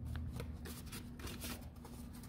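Sheets of paper rustling and crackling as they are handled, a quick run of short dry rustles, over a faint steady hum.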